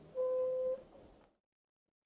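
A single steady electronic beep, about half a second long, near the start.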